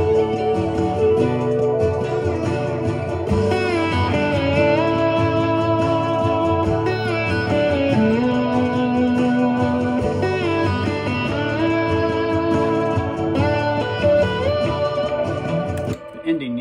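Electric slide guitar on a Gibson ES-335 playing a melody of gliding notes over the song's full recorded backing track, cutting off at the end.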